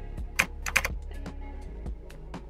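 A few keystrokes typed on a computer keyboard, over steady background music.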